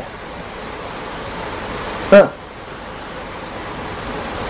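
Steady rush of flowing water, an even hiss-like noise, with a single short syllable from a man's voice about halfway through.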